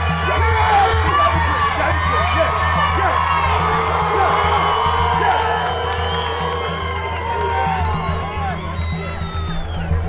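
A crowd cheering and shouting, many voices at once, over background music with a steady low drone.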